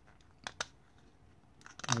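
Light clicks of 3D-printed plastic chassis parts being handled and pushed together: two about half a second in, then a quick run of clicks near the end as the part goes in.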